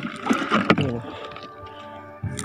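Shallow sea water splashing and sloshing with a gurgle for about the first second, then quieter. Background music with steady tones runs throughout.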